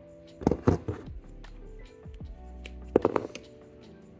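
Background music with a steady tune. Over it come two short clusters of clicks and knocks, about half a second in and again about three seconds in: pliers and a pen being handled on the tabletop.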